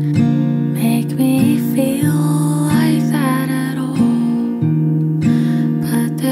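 Acoustic guitar strumming chords in a singer-songwriter song, the chords changing about once a second, with a gliding melody line above them.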